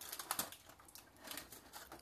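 Aluminum foil crinkling in a scatter of faint, quick crackles as the foil cover is peeled back from a foil pan.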